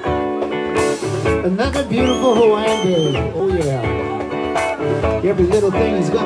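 Live band music: electric guitar carrying a bending melody over percussion hits.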